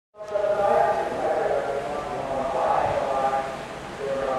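Many voices at once, overlapping and continuous, starting abruptly just after the opening.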